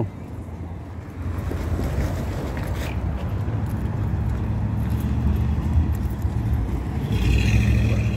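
Street traffic: motor vehicles running close by as a steady low rumble, which grows a little louder near the end.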